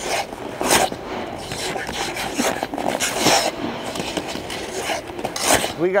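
Hockey goalie's skate blades scraping the ice during lateral T-push footwork, with three louder scrapes about two and a half seconds apart.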